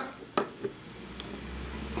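A few sharp clicks and knocks of a small glass sample vial being handled and set into the plastic holder of a Hanna Checker phosphate meter, the loudest about half a second in.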